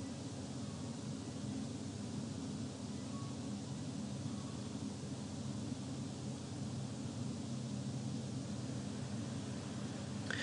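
Steady background hiss with a low hum underneath: room tone from the recording microphone, with no other sound standing out.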